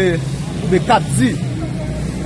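A person speaking in short bits, over a steady low hum that runs without a break.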